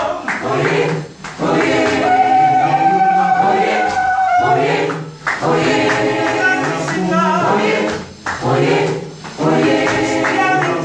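Gospel choir singing in short phrases separated by brief breaths, with one long held note a couple of seconds in.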